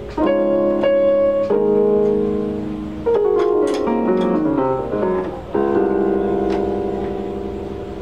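Electronic keyboard with a piano sound playing full, sustained chords, each struck and left to ring. Midway a quick descending arpeggio runs down the keys, and it ends on a long held chord.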